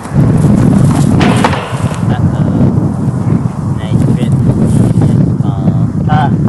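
Wind buffeting the camera microphone, a loud low rumble that sets in just after the start and keeps on, rising and falling.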